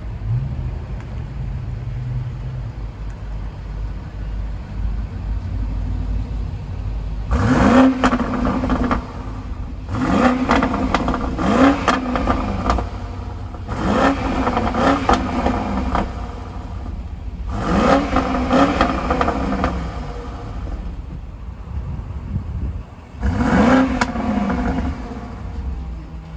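2020 BMW X6 M50i's twin-turbo 4.4-litre V8 exhaust, loud, idling steadily between about six quick throttle blips, each rev climbing sharply and dropping straight back to idle.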